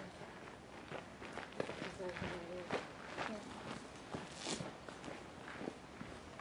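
Irregular scuffs and knocks, with a short, indistinct voice about two seconds in.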